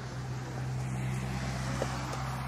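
A minivan driving past on the street, its engine and tyre noise swelling as it draws near, over a steady low hum.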